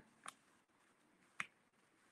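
Near silence, broken by two short clicks about a second apart, the second one louder.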